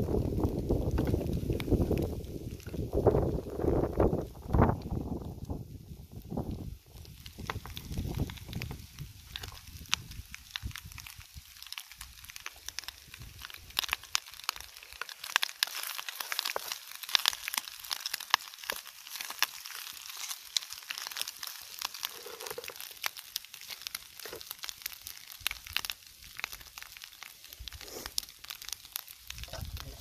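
Bacon and eggs sizzling in a frying pan over a wood campfire, with dense fine crackling from the pan and fire. A low wind rumble on the microphone covers the first several seconds and then drops away.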